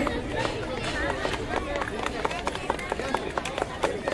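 Scattered hand clapping from an audience, irregular claps several a second, with faint chatter beneath.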